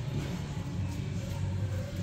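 Shop ambience: faint background music over a steady low rumble.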